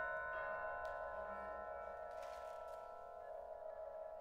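Contemporary chamber ensemble holding a ringing chord of several steady tones that slowly fades, with a brief soft hiss a little past two seconds in.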